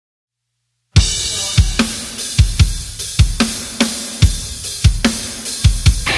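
Silence for about the first second, then a rock drum kit playing alone: a loud crash with bass drum about a second in, followed by a steady beat of bass drum and snare under ringing cymbals.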